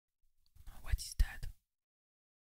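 About a second of breathy, whisper-like mouth sounds, starting about half a second in, with two deep thumps close together near the middle.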